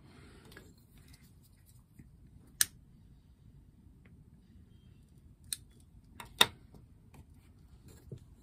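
Four short, sharp clicks over faint room noise, the loudest about six and a half seconds in, two of them close together.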